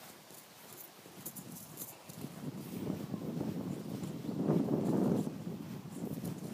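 Footsteps walking through long grass, with the grass swishing and rustling against the legs; the steps grow louder after about two seconds and are loudest near the end.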